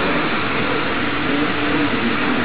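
Steady running noise of an airbrush compressor with air hissing.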